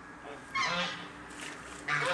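Domestic geese honking: one harsh call about half a second in and another starting near the end.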